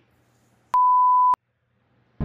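Censor bleep: a single steady high-pitched beep lasting about two-thirds of a second, starting and stopping abruptly, dubbed over a swear word that follows "Holy".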